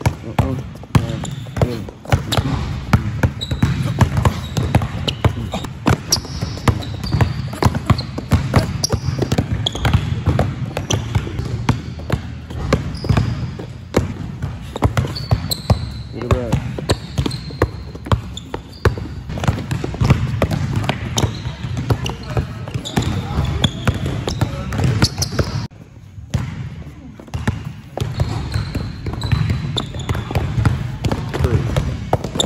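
Basketball dribbled hard and fast on a plastic tile court floor, a quick, steady run of bounces, with people's voices in the background.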